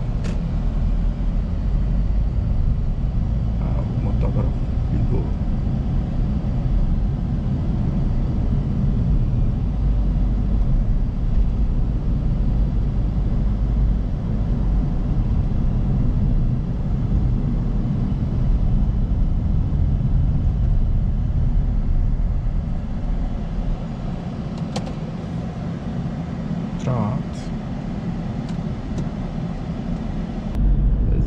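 Toyota Prius hybrid driving on city streets, heard from inside the cabin: a steady low road and tyre rumble.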